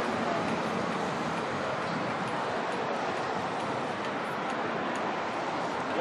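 Steady, even rushing outdoor noise with no engine, horn or other distinct tone: wind and sea ambience.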